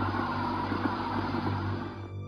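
Old shortwave radio intercept, the 1961 recording claimed to be a female cosmonaut's distress call: a steady hiss of static over a low hum, with the woman's voice faint and unintelligible. The static cuts off near the end.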